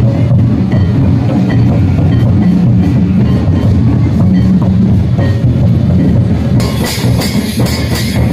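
Loud folk drumming for a street dance: large barrel drums beat a steady dance rhythm. About two-thirds of the way through the sound changes abruptly to sharper, brighter drum strokes with ringing highs.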